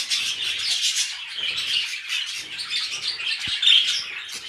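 A flock of budgerigars chattering: continuous high-pitched chirps and warbles from many birds at once.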